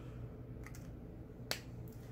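A single sharp click about one and a half seconds in, with a fainter tick before it, over a low steady hum.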